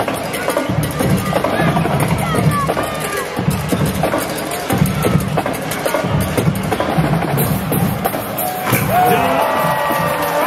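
Music with a steady drum beat and percussion, heard over the noise of an arena crowd during play.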